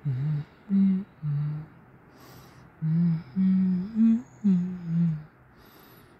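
A person humming a tune with closed lips in short notes, about eight in all, stepping up and down in pitch, in two phrases with a pause between them.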